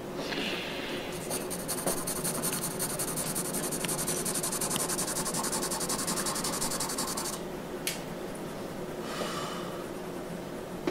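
A brush scrubbing charcoal on drawing paper in fast, even back-and-forth strokes for about six seconds. After a pause, a shorter burst of rubbing comes near the end.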